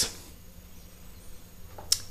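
Quiet room tone with a faint steady low hum, broken near the end by one brief, sharp hiss.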